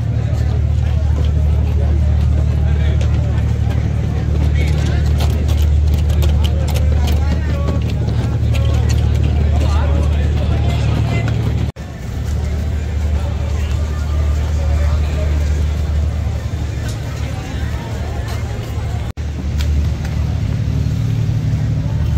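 Chatter of many people in a busy harbour crowd over a steady low engine drone. The sound briefly cuts out twice, about midway and near the end.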